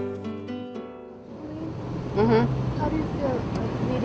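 Background music fading out over the first second, then the steady road noise of a moving van heard from inside its cabin, with faint voices.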